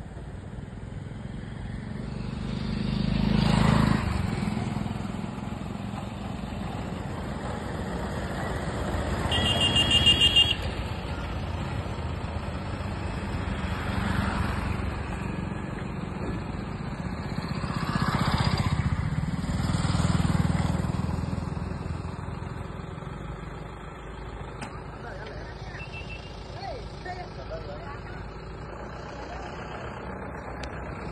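Road vehicles passing by one after another, each pass swelling and fading; the loudest, about a third of the way in, carries a short high-pitched pulsing tone.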